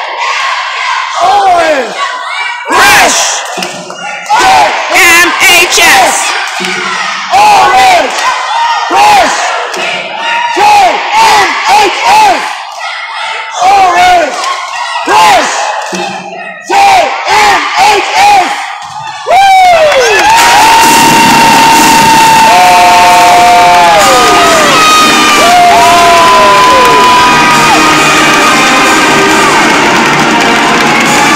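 A cheerleading squad shouting a chant in unison, about one shout a second, over crowd cheering. About two-thirds of the way through, loud music starts abruptly and keeps playing.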